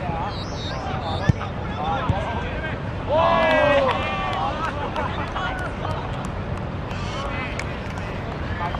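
A football kicked hard once, a sharp single thud about a second in, followed around three seconds in by a loud, high shout of players cheering a goal, over a steady outdoor rumble and scattered voices.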